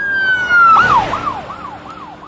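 Electronic emergency siren: a held wail drops and switches to a fast yelp, about four cycles a second, fading away. A brief rush of noise comes at the switch.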